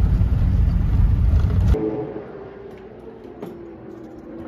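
Loud low rumble of a road vehicle driving, heard from inside the cab. It cuts off abruptly a little under two seconds in, leaving a much quieter steady hum.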